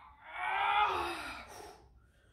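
A young man's long strained groan of effort while miming the lift of a very heavy barbell, rising and then falling away over about a second and a half.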